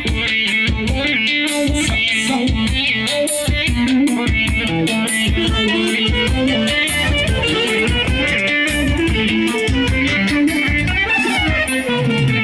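Live band music led by a clarinet playing a busy, wavering melody over a steady, driving drum beat and bass line.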